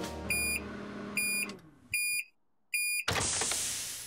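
Microwave oven beeping four times at even intervals, its end-of-cycle signal, then a sharp click as the door pops open, followed by a rush of noise that fades away.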